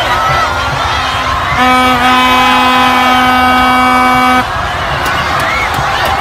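A crowd cheering and shouting, cut through by one long, steady horn blast lasting about three seconds, starting about one and a half seconds in.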